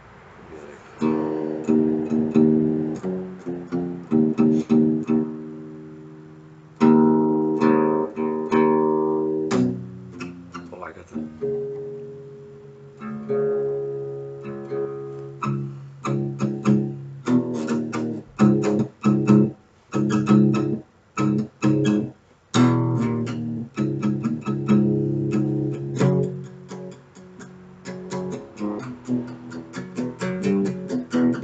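Acoustic guitar being strummed: full chords ring out and fade in the first half, then from about halfway the strumming turns quicker and choppier, with short stopped strokes and brief gaps.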